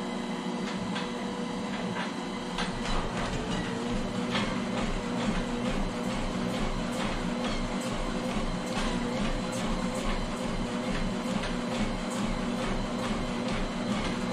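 Motorized treadmill running: a steady motor hum that rises in pitch as the belt speeds up a few seconds in, with regular footfalls on the moving belt.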